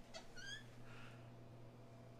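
Faint short squeak from the swinging hotel room door about half a second in, over a low steady room hum.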